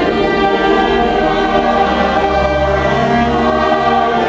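A small mixed choir of men and women singing a slow classical piece with string accompaniment including violin, the voices holding long notes that change in steps.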